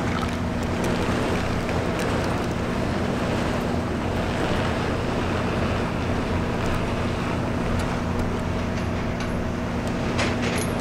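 The engine of a tow tractor running steadily with a low, constant hum as it slowly hauls a shrink-wrapped subway car on a wheeled transporter.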